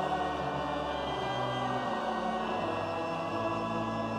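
Church congregation singing the closing threefold 'Amen' to sustained pipe-organ chords, after the blessing.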